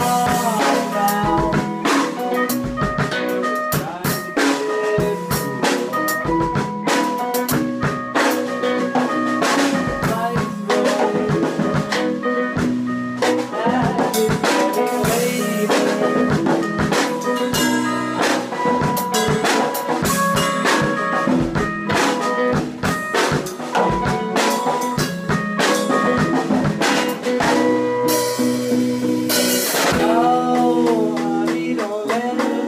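Rock band playing live: two electric guitars over a drum kit with steady beats and cymbal crashes.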